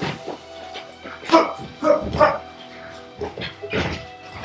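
Background music plays under short, sharp bark-like grunts from the sparring boxers, with three close together in the middle and one more near the end.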